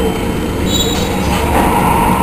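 Conch shells being blown: a sustained horn-like tone over a steady noisy background, growing stronger near the end.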